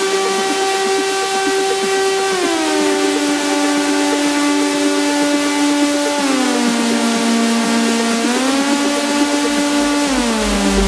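Breakdown in an electronic trance track: one sustained synthesizer note with no beat under it, gliding down in pitch about two seconds in and again about six seconds in, then sliding back up a little past eight seconds.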